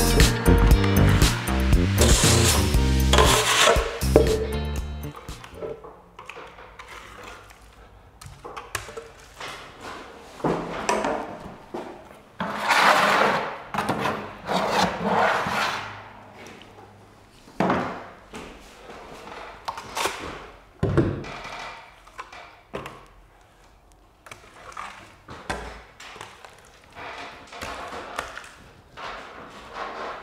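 Background music fading out over the first few seconds, then irregular scraping strokes from a plastering trowel working wet skim plaster on the hawk and across the ceiling.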